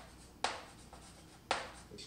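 Chalk writing on a chalkboard: two strokes about a second apart, each starting sharply and fading out.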